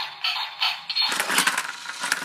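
Toy remote-control battle car sounding tinny electronic engine and effect sounds in quick pulses. About a second in they grow louder and denser, with clicking and clatter.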